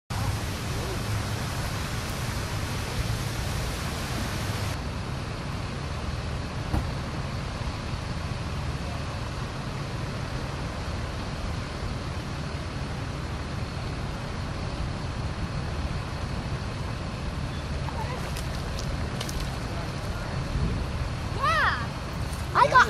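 Steady outdoor background noise dominated by a low rumble; a layer of high hiss drops away about five seconds in. A voice is heard briefly near the end.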